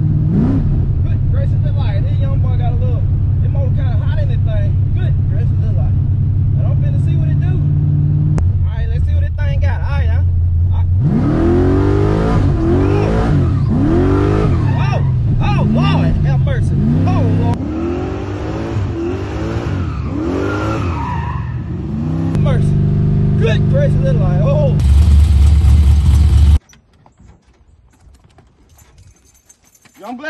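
Box Chevy's engine heard from inside the cabin while driving: it runs steadily at first, then surges up and down in a quick series of revs about a second apart, then runs steadily again. The sound cuts off suddenly near the end.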